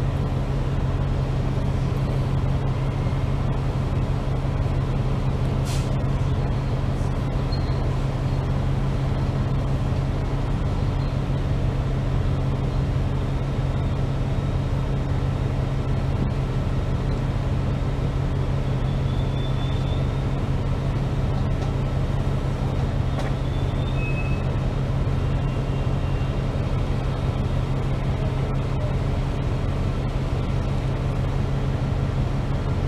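Cabin noise on a double-decker bus: a steady low engine and drivetrain hum. A few faint high squeaks come through about two-thirds of the way through.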